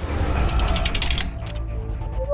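Logo-sting sound effect: a sudden loud whoosh with a low rumble, then a fast run of mechanical ratcheting clicks, about a dozen a second, for under a second, settling into a low steady drone with held musical tones.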